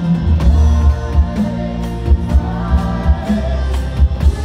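Live rock band playing: bass guitar, keyboards and drums, with sung vocals over them.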